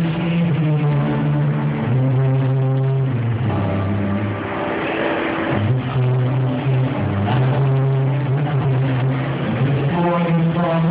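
Live music from a solo acoustic set: long, steady low notes held a second or two each, shifting pitch every few seconds, over guitar.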